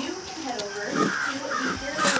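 A bird calling, with a few rough calls about halfway through.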